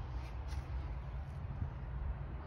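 Quiet background: a steady low rumble with a few faint rustles and ticks, no distinct sound event.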